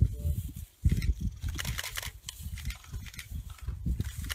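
Camera shutters firing in quick bursts of clicks, over a low, uneven rumbling noise.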